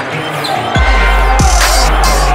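Electronic background music track; about three-quarters of a second in, a heavy bass drop comes in, with deep kicks that fall in pitch, and the track gets louder.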